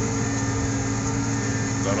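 Farm tractor engine running steadily while pulling a disc harrow through the soil, heard from inside the cab as a constant low hum.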